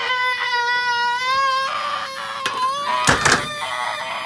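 A young man's high-pitched, drawn-out laughing squeal, held at one pitch for a couple of seconds, then breaking into a louder burst of laughter about three seconds in.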